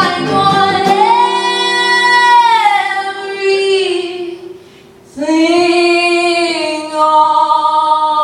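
A woman singing two long held notes live, the first bending up and then falling away, with a short breath about five seconds in before the second. Acoustic guitar strumming stops about a second in, leaving a chord ringing under the voice.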